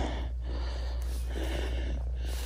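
A man's breathing close to the microphone, over a steady low rumble.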